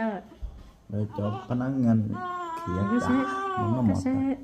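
Adults talking to a baby in a drawn-out, sing-song way, with one long held call from about two seconds in that falls in pitch at its end.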